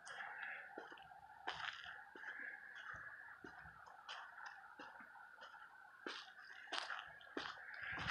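Faint footsteps on cracked asphalt, a little under one and a half steps a second, over a faint steady hiss.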